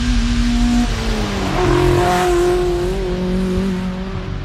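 A motor vehicle passing, its engine note rising about a second and a half in and the rush of its passing loudest a little after the middle, then fading.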